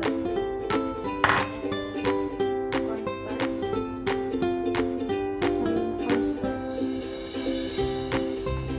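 Background music: a light plucked-string melody over a steady beat.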